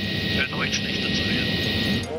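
Steady helicopter cabin noise from the engines and rotor in flight, with a man speaking over it through a headset microphone.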